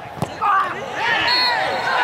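Men's voices shouting at once across an empty football stadium, overlapping high calls from the touchline and pitch starting about half a second in, after a short click.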